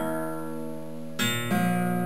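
Classical guitar plucked note by note: a note rings on and fades, then two more notes are plucked about a second in and a moment later, ringing on together. The strings are being tuned by ear, tone after tone, to a chord that feels right to the player.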